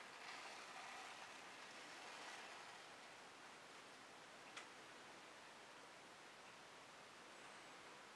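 Near silence: faint handling rustle in the first couple of seconds and a single faint click midway, from hands laying a metal ball chain across a wet acrylic-painted canvas.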